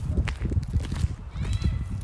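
Footsteps on a snowy, slushy path, a series of short irregular knocks over a low rumble on the microphone.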